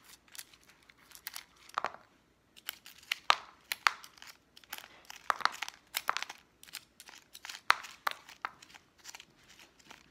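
Irregular crackling and clicking from hands handling a small plastic plant pot topped with pebbles during repotting, several sharp clicks a second with short pauses.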